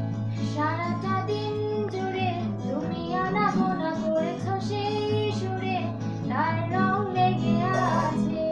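A woman singing a melody over a strummed acoustic guitar, its chords ringing steadily beneath the voice.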